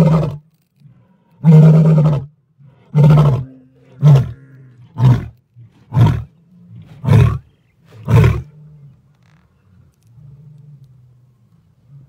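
White lion's roaring bout: a long roar, then a run of shorter roars about once a second, each briefer than the last, ending about eight and a half seconds in.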